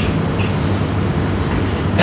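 Steady background hiss with a low hum from the hall and its sound system, with no speech.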